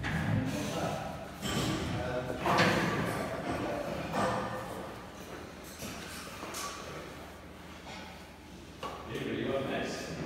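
Indistinct talking, with no clear words coming through.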